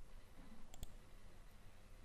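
Two quick clicks close together, about three-quarters of a second in, from working a computer's mouse or keyboard, over faint background hiss.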